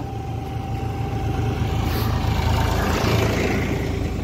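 Motorcycle engine running steadily while riding. An oncoming tractor passes close by about two to three seconds in, adding a louder rush of engine and road noise.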